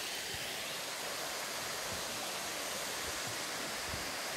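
Steady rushing of a waterfall.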